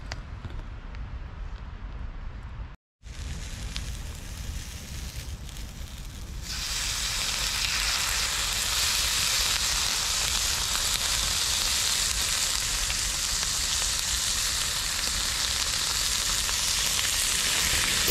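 Marinated horumon (offal) and vegetables hitting a hot pan over a campfire grill and frying: a steady, loud sizzle that starts about six seconds in and holds. Before that there is only a lower background hiss.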